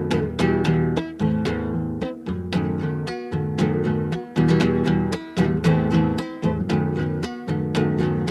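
Acoustic guitar playing alone in a steady strummed rhythm of chords: the instrumental break between verses of a folk song.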